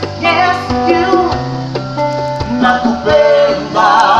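A woman singing a soul song live, over acoustic guitar accompaniment with steady low notes beneath.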